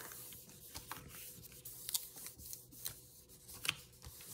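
Hands pressing and smoothing a paper panel onto a cardstock journal page: soft paper rustling with a few light ticks and brushes.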